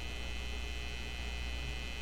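A steady, low electrical hum with a faint hiss underneath: the background noise of the broadcast audio line, with no speech over it.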